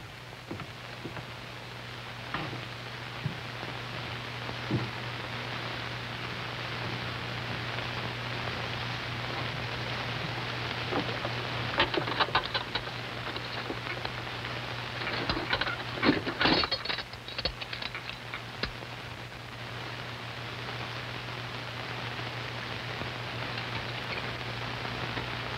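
A steady hiss with a low hum under it. About halfway through, and again two-thirds of the way in, there are brief clusters of clicks and knocks as gear is handled and shifted in a wooden boat.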